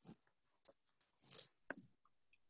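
Faint, short breathy puffs and sniffs picked up by a webcam microphone, with a brief click near the end.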